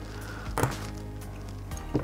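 Background music, with one light knock about half a second in and a fainter one near the end.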